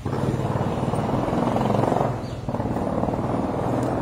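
A loud, steady motor-vehicle engine running close by, with a brief dip in level about halfway through.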